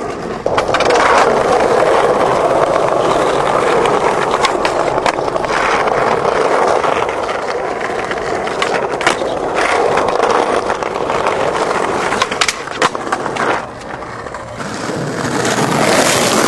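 Skateboard wheels rolling over rough pavement, a steady loud roll that fades briefly near the end, with a few sharp clacks of the board along the way.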